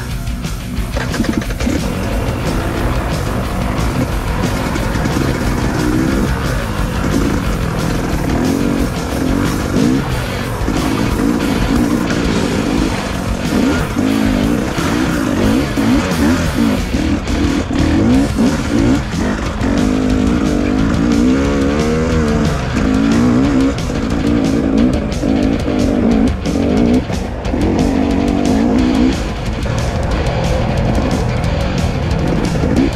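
Two-stroke KTM 300 EXC trail bike engine revving up and down over and over while riding, mixed with rock music.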